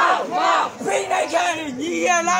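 A crowd of young protesters chanting a short slogan in Burmese in unison, shouted over and over in a steady rhythm of about two calls a second.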